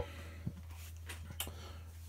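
Faint room tone in a small enclosed space: a steady low hum with two faint ticks, about half a second and a second and a half in.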